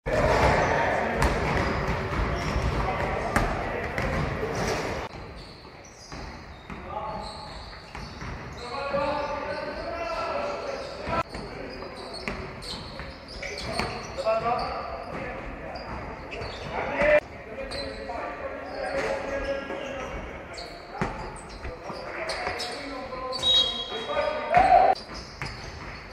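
Basketball game in an echoing sports hall: the ball bouncing on the hardwood floor, with players shouting between plays. The first five seconds are louder and denser than the rest.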